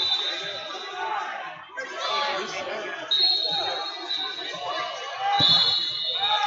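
Overlapping voices of spectators and coaches calling out, echoing in a large hall, with a single heavy thump about five and a half seconds in.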